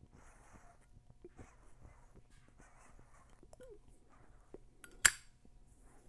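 Soft, breathy puffs of a tobacco pipe being drawn on while it is lit, several in a row, then a single sharp click about five seconds in.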